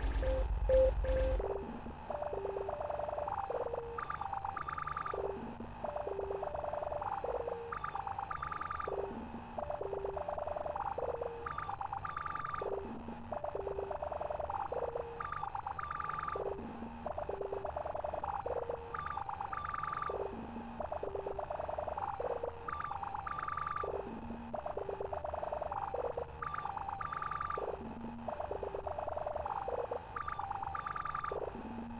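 Electronic music sequenced on an Elektron Digitakt: a drum beat with heavy bass cuts out about a second and a half in. What remains is a looping melody of short, plain synth blips that step between low and high notes, repeating about every four seconds.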